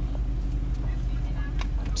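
Steady low rumble of a car heard from inside the cabin, a drone with a few faint clicks.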